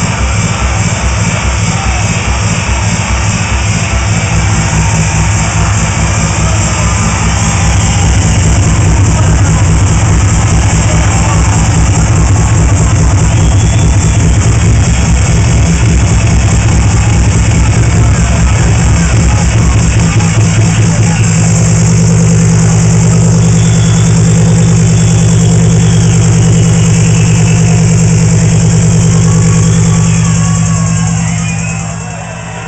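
Loud minimal techno from a DJ set played through a club sound system: a steady, driving kick-drum beat with heavy bass. About 21 s in, the bass line changes to a fuller, more sustained drone under the beat.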